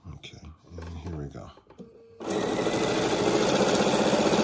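An electric sewing machine starts stitching about two seconds in and runs steadily, sewing binding along a quilt's edge.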